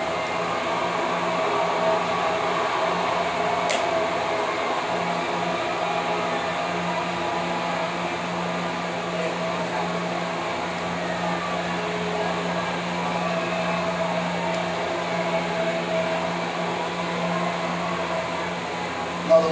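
A steady machine hum with a low drone that holds unchanged throughout.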